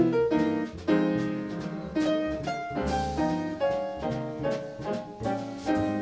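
Live acoustic jazz piano trio playing: piano chords struck about once a second ring and fade over a walking double bass, with drums behind.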